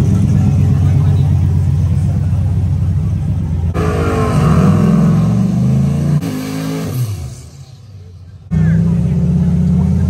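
Diesel truck engines at a drag strip, heard in edited snippets. A loud, steady engine note changes abruptly about four seconds in to engine sound rising and falling in pitch. It drops away for about a second near eight seconds, then a loud steady engine cuts back in.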